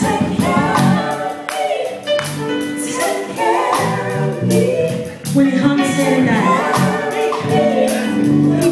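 Female gospel vocal group singing a song in harmony, with several voices carrying the melody together over a live band with a steady drum beat.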